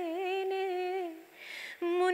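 A woman singing unaccompanied, holding one long note that wavers at its start, then a quick breath in before her voice comes back in near the end.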